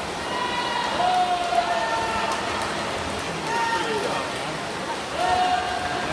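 Spectators cheering on swimmers in a race: several long, high-pitched shouts of encouragement over a steady noisy hubbub of crowd and splashing water.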